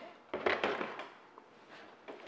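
Plastic knocking and handling sounds from a plastic milk jug and its screw cap being picked up and closed, in a short cluster about half a second in, then fading.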